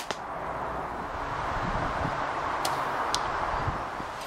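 A compound bow being shot: one sharp crack of the string and limbs on release, followed by two faint ticks later on, over a steady hiss of outdoor air.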